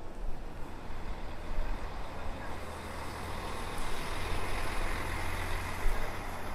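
Low engine rumble of a large vehicle, swelling in the second half, over the general noise of a city street with people's voices.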